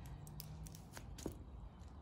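A few faint metallic clicks as a carabiner is clipped onto a ring of a dog's flat collar.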